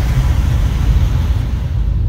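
Steady low road rumble heard inside a moving car's cabin, with an even hiss of tyres on wet asphalt that thins out near the end.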